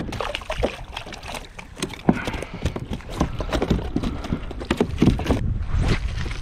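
Irregular knocks and clicks against a plastic kayak hull and fishing gear, with water sloshing, the sharpest knock about two seconds in.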